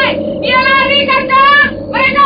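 A high-pitched, wavering melodic line in two long phrases, with a short dip between them, over a steady low drone.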